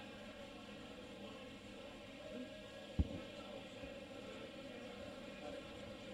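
Quiet room tone of a large hall with a faint steady hum, and a single dull thump about halfway through.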